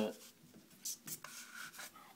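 A few short rubbing scrapes as a washing machine hose connector is pushed and twisted onto the drain-off valve at the bottom of a central heating magnetic filter.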